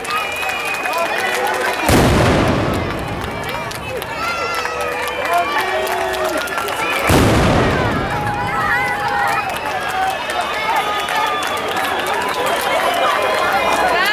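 Two loud mascoli blasts, black-powder firework charges, about five seconds apart, each with a rolling echo, over continuous crowd chatter and faint crackling.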